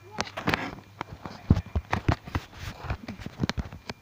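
A string of irregular knocks, scuffs and dull thumps, unevenly spaced, with the heaviest thumps about a second and a half in and again near the end.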